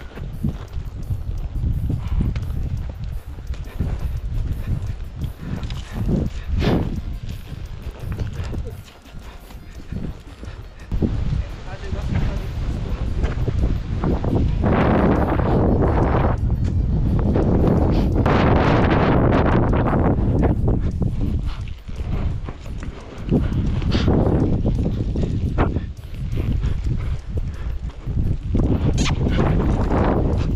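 Wind buffeting a body-worn camera's microphone, loudest for several seconds around the middle, over a horse moving on soft sand, with a few short sharp sounds.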